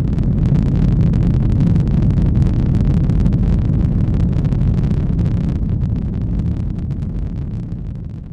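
Rocket engines at liftoff: a loud, low rumble with crackling on top, holding steady and then slowly dying away near the end.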